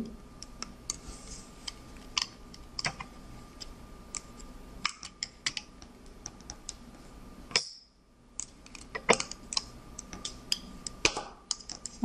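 Scattered light clicks and taps of rubber bands being worked off the clear plastic pegs of a Rainbow Loom with a metal hook and fingers, the bands snapping loose and the hook knocking the pegs.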